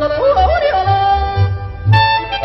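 Alpine folk music: a yodeling voice leaping up and down in pitch over accordion accompaniment, with a bass stepping between two low notes about twice a second.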